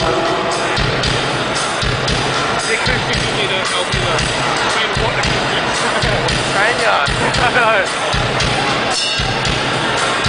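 A live rock band playing through a PA, recorded from within the crowd: electric guitars and a drum kit, with a steady run of drum hits and wavering voice-like lines later on, and crowd noise mixed in.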